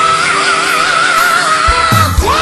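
A woman's high belted note, swooping up into it and held for nearly two seconds with a wide vibrato before it breaks off near the end, sung over a live band's sustained accompaniment.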